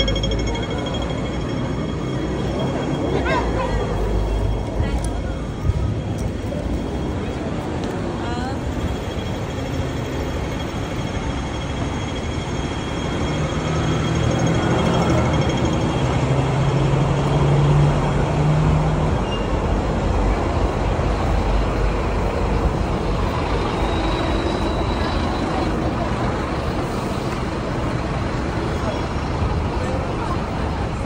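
City street traffic noise with people talking nearby; a bus engine drones low for several seconds around the middle.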